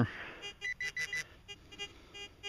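Metal detector giving a string of short electronic beeps, several quick tones in a row.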